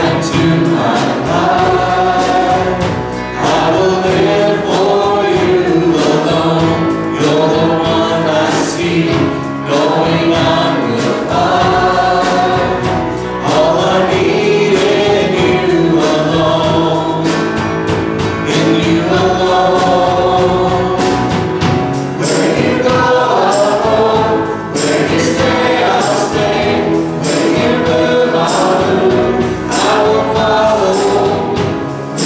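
Worship team of male and female singers singing a contemporary worship song together into microphones, over keyboard and band accompaniment with a steady beat.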